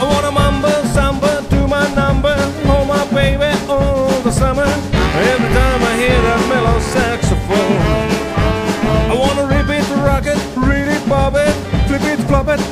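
Live rock and roll band playing an up-tempo boogie number: saxophones over electric guitar and drums, with a steady driving beat.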